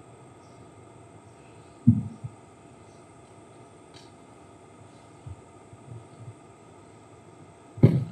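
Microphone handling noise over a faint steady background: a loud, dull thud about two seconds in, a few soft knocks later, and a sharp click just before the end.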